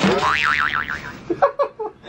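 Cartoon 'boing' sound effect: a sudden spring twang whose pitch wobbles quickly up and down, dying away after about a second. Short bursts of voice follow near the end.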